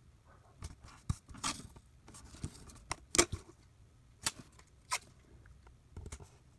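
Washi tape being unrolled and pressed along a paper planner page, soft crackly rustles of tape and paper broken by a handful of sharp clicks and taps as it is handled.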